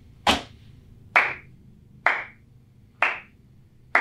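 A slow handclap: five single claps about a second apart, given as mock applause.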